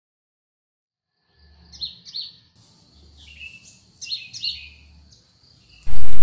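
Small birds chirping outdoors, fading in after a second or so of silence: short falling chirps in quick clusters. A sudden, much louder sound cuts in right at the end.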